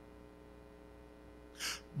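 Quiet room tone with a faint steady hum, then a man's short, sharp in-breath into a handheld microphone near the end.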